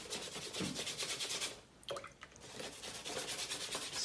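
Paintbrush loaded with blue paint scrubbing back and forth across a sheet of paper on a wall, a fast run of rubbing strokes that stops briefly about halfway through.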